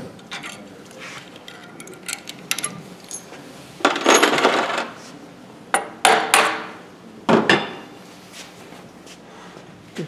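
Handling noise at a wood lathe: faint clicks as a threaded piece is unscrewed from the spindle fixture, then three louder bouts of hard objects knocking and scraping, about four, six and seven seconds in.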